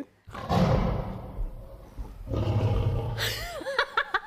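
Loud, rough vocal noises from a man eating a piece of chocolate-mousse brioche, then a woman's high-pitched laughter near the end.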